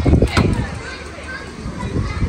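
Children's voices outdoors as an SUV's rear door is unlatched and pulled open, with a few sharp clicks and knocks in the first half second over a steady low rumble.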